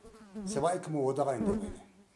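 A man speaking: only speech, with no other sound.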